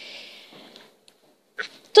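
A woman drawing in a breath through her mouth: a soft hiss lasting about a second, fading away.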